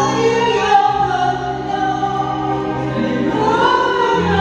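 Two women singing together through handheld microphones over backing music with steady low notes.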